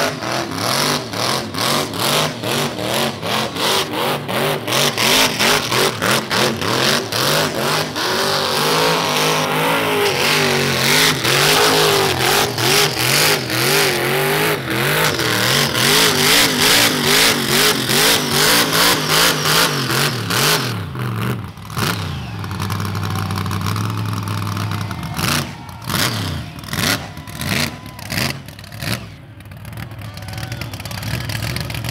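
Supercharged V8 in a Suzuki Mighty Boy doing a burnout: the engine is held at high revs in rapid pulses, about three a second, with the rear tyres spinning. About two-thirds of the way in the revs drop to a low, steady idle, broken by a few short revs near the end.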